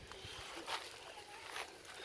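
Faint outdoor background noise in a lull between voices, with a couple of soft brief sounds about a second in and near the end.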